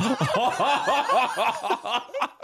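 Men laughing: a quick, even run of ha-ha sounds, about five a second.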